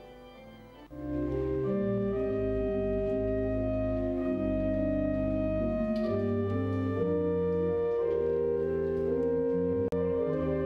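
Rudolf von Beckerath pipe organ playing Baroque music in slow, long-held chords over deep pedal notes. It enters loudly about a second in, after a faint start.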